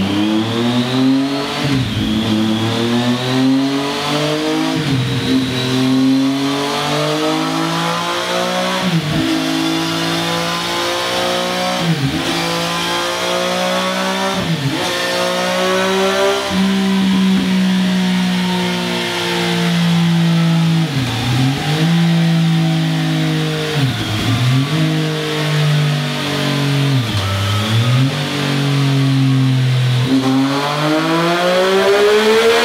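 Triumph Street Triple 765's inline three-cylinder engine running through a Scorpion Serket Taper exhaust on a rolling-road dynamometer. The engine note climbs over about the first half, dropping briefly every two or three seconds, then holds high with a few more brief dips.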